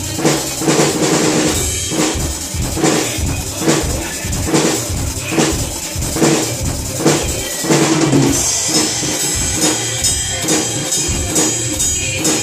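Acoustic drum kit (PDP drums, Sabian cymbals) played in a steady beat of kick and snare strikes over a recorded Hindi film song. About eight seconds in, the playing changes and a bright cymbal wash fills the top.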